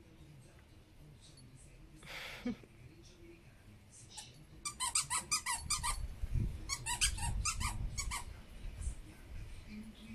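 Dog's squeaky toy squeaked in a quick run as a dog bites and chews it, several high squeaks a second, starting about five seconds in and going on for about three and a half seconds.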